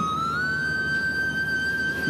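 A sustained high-pitched tone with overtones, sliding up a little in pitch about half a second in, then held steady.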